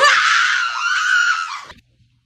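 A person screaming in fright: one long, high-pitched scream that wavers slightly and cuts off suddenly near the end.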